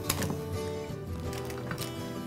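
Background music with sustained notes. A few light clicks from metal tongs against the cooking pot sound over it.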